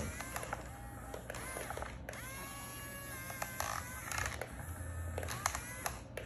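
Remote-control model excavator working: its small electric motors whine, gliding up in pitch and then holding as the arm and bucket move, with small clicks and scrapes of the bucket in sand. The clearest whine comes about two seconds in and lasts about a second.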